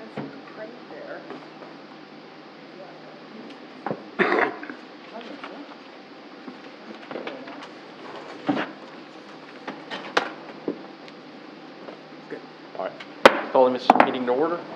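Meeting-room background of low murmured voices, with scattered small knocks and clicks of objects set down and handled on desks, including a sharp knock near the end.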